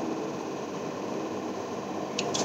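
Steady hiss of background noise with no distinct events.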